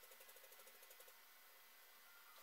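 Near silence: room tone, with a faint quick run of ticks, about ten a second, that stops about a second in.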